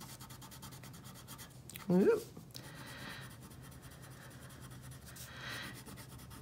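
Wax crayon scratching and rubbing across paper as an area is colored in, faint and steady.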